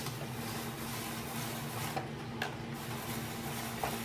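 Hand-cranked spiralizer cutting a zucchini into noodle strands: a steady mechanical sound of the crank turning and the blade cutting, with a few light clicks.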